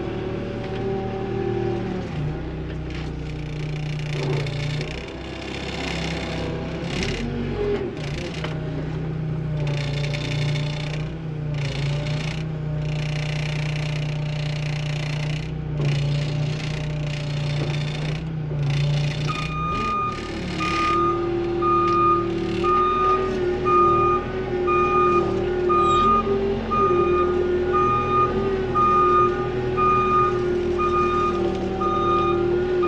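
A farm loader's engine running steadily. About twenty seconds in its backup alarm starts, beeping evenly over the engine as the machine reverses.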